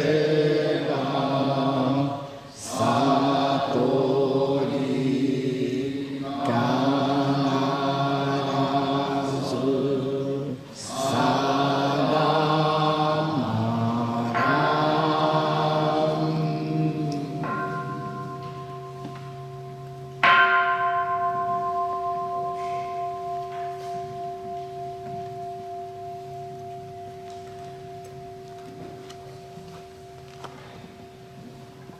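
A man's voice chanting Buddhist liturgy, pausing briefly for breath, ends about halfway through; a large bronze bowl bell (kin) is then struck, lightly once and then hard a few seconds later, and rings on, fading slowly with a gentle wobble.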